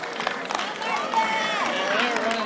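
Gymnasium crowd chatter: several voices talking at once, one voice rising clearly about a second in, with scattered short sharp knocks from people moving on the court.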